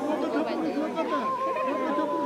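Many people's voices overlapping in chatter, with a high, wavering held voice or tone rising out of them about a second in.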